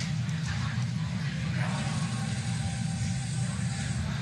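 Steady low rumble and hiss of ambient sound at the launch pad around a fuelled Falcon 9 rocket, with a brighter high hiss joining about one and a half seconds in.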